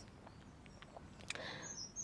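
Quiet outdoor background with a few faint bird chirps and light clicks.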